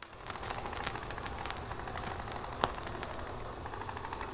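Steady crackling hiss with scattered small clicks and one sharper click about two and a half seconds in.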